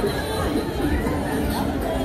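Crowd chatter on a busy pedestrian street: many people talking at once as they walk past, with music playing in the background.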